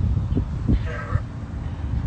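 Wind rumbling on the microphone outdoors, with a short, faint pitched call about a second in.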